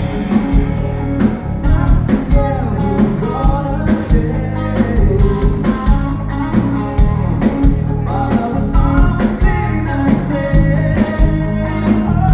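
Live melodic rock band playing a song: male lead vocal sung over electric guitar, bass guitar and a drum kit keeping a steady beat.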